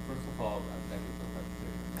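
Steady low electrical mains hum, with faint, distant speech from across the room.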